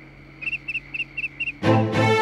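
Night ambience of short, high cricket chirps, about six in quick succession over a faint low hum. Near the end, background music cuts in loudly.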